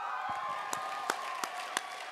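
Comedy-club audience reacting: a few voices calling out in long, high cheers while one person claps steadily, about three claps a second.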